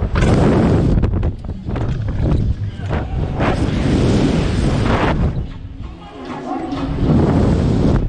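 Wind buffeting the microphone of a camera mounted on a slingshot ride capsule as it swings through the air: a loud, gusting rush with heavy rumble that eases briefly about six seconds in.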